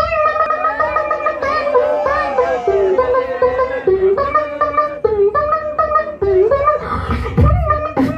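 Beatboxer performing into an amplified handheld microphone: a sung melody of sustained pitched notes, in the manner of a plucked string instrument, that dips and returns about every second and a quarter over a faint beat, with a heavy bass hit about seven seconds in.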